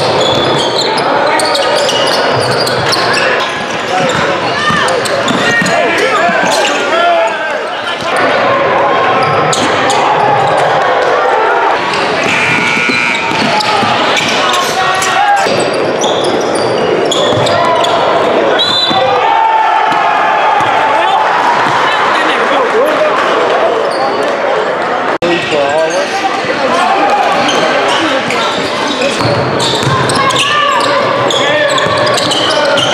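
Live game sound in a high school gym: a basketball dribbling and bouncing on the hardwood court, with sneakers squeaking and players and spectators calling out and talking all through, echoing in the large hall.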